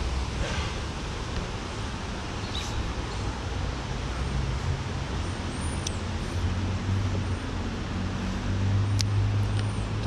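Creek water running over shallow riffles in a steady rush, under a low rumble of road traffic that grows louder in the second half. A few light clicks sound now and then.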